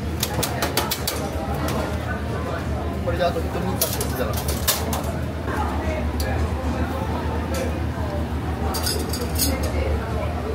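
Commercial kitchen at work: a steady low rumble from the gas range burners and extractor, with scattered sharp clinks of metal utensils and pans. Faint voices are mixed in.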